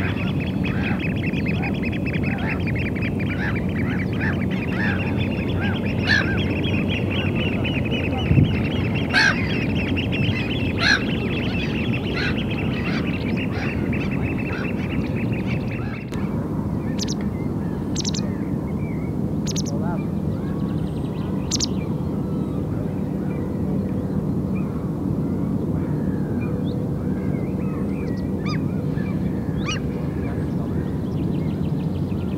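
Wild birds calling over a steady low background rumble. A dense, fast-repeating chorus of calls fills the first half, then after an abrupt change about halfway through only a handful of short, sharp high calls remain.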